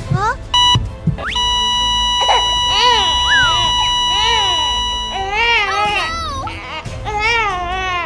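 Two short electronic beeps, then a long steady beep of a patient heart monitor flatlining, the sign that the patient has died. Over and after it, high-pitched cartoon voices babble and wail in rising and falling arcs.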